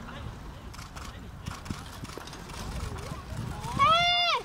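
Horses' hooves and a competition carriage running over grass. Near the end comes a loud, high, drawn-out call that rises, holds, then falls.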